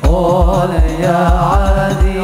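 Hadroh ensemble: hand-beaten frame drums keep a steady driving rhythm of deep thumps under a solo young male voice singing an Arabic sholawat in a wavering, ornamented line.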